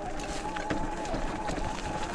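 Sur-Ron Light Bee X electric dirt bike's motor whining at a steady, slightly wavering pitch while riding a rough dirt trail, with scattered light clicks and knocks from the bumpy ride.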